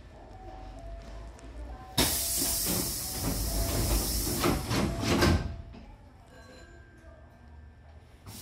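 Hankyu train's pneumatic sliding doors closing: a sudden loud hiss of compressed air about two seconds in as the door leaves slide shut, with several knocks as they meet, all over a little past five seconds.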